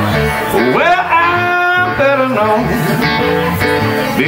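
Live electric blues band playing: an electric guitar fill over bass and rhythm guitar, with a note bent up and held about a second in.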